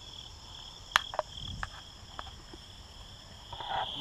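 Steady chorus of field insects, a continuous high chirring. About a second in come two sharp clicks in quick succession, the loudest sounds here, followed by a few lighter ticks.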